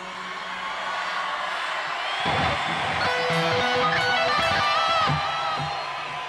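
Electric guitar playing a short lead line over live concert music, starting about two seconds in, with held notes and bent, wavering pitches.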